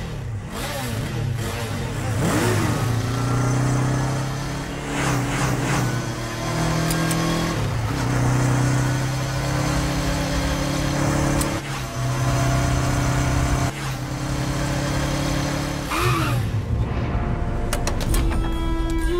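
Motorcycle engine revving, held at steady pitches that step up and down every few seconds, with a quick rise and fall in pitch about two seconds in and again near the end.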